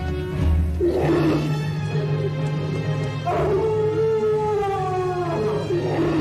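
A long animal howl from a horror film's soundtrack, falling slowly in pitch, over a low, steady music drone. A shorter cry comes about a second in and another near the end.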